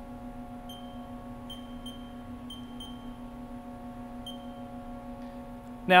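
Key-press beeps from a Haas Next Gen CNC control's keypad as the edit and arrow keys are pressed to navigate through menus. There are about eight short, high beeps at uneven intervals, several in quick succession, the last a little past four seconds in. A steady low electrical hum runs underneath.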